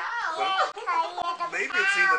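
A toddler and an adult talking over one another, the words indistinct; the child's voice is high-pitched and rises and falls.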